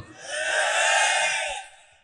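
A man's long, breathy intake of breath close to a microphone, lasting about a second and a half before fading out.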